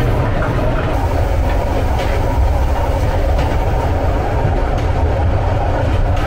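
Passenger sleeper train running on the rails, heard from inside the carriage: a loud, steady low rumble with a couple of faint wheel clicks.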